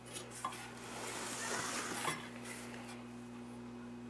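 Metal vacuum-tube TV chassis from a Philco Predicta Tandem II being gripped and tipped over by hand: scraping and light metallic rattling for about two seconds, then dying down to a faint steady hum.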